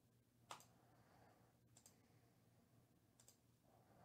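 Near silence with a few faint computer mouse clicks: one sharper click about half a second in, then two quick double clicks.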